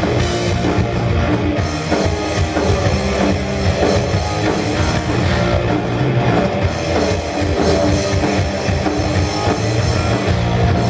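A live rock band playing an instrumental: two electric guitars, a bass guitar and a drum kit, loud and without a break.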